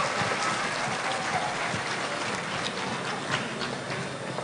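Large seated audience applauding, the applause slowly dying down.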